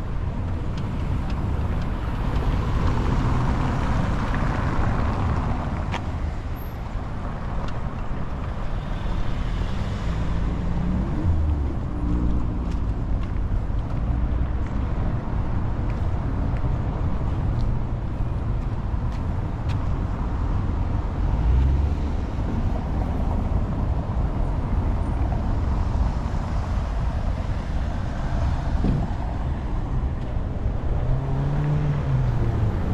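City street traffic: motor vehicles running and passing, one passing pass swelling up in the first few seconds, over a steady low rumble.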